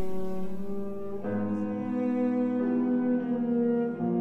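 Background music of slow bowed strings, cello and double bass, holding long sustained chords. A fuller chord comes in about a second in, and the notes shift again partway through.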